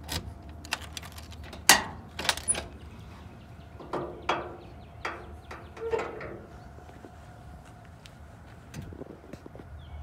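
Car keys jangling and clicking in the trunk lock of a 1967 Chevelle, with a sharp latch clunk a couple of seconds in. Scattered knocks and clicks follow as the trunk lid is opened.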